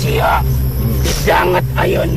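A voice speaking in two short phrases over low, steady background music.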